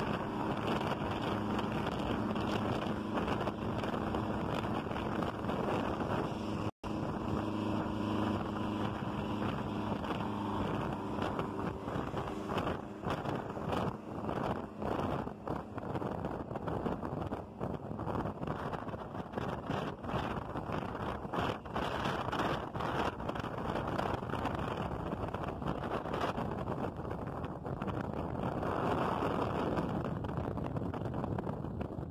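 Vintage diesel intercity bus running close alongside on an uphill grade: a steady engine drone mixed with road and tyre noise. The sound is broken by a split-second gap about seven seconds in, and wind buffets the microphone through the second half.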